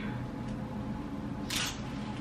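A clothes hanger scraping onto a metal clothing rail as a coat is hung up: one short scrape about one and a half seconds in, over a low steady hum.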